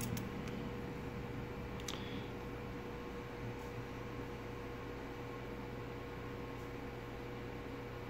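Steady quiet room tone: a low electrical or fan-like hum over a soft hiss, with a single faint click about two seconds in.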